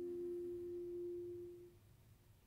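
A single soft, nearly pure held note from the chamber ensemble, the tail of a fading bowed-string passage. It dies away about three-quarters of the way through.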